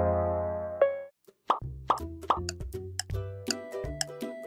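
Background music: a held synth chord fades out and breaks off about a second in. After a short gap a new upbeat track starts with three quick rising blips, then settles into a steady beat with ticking clicks and bass.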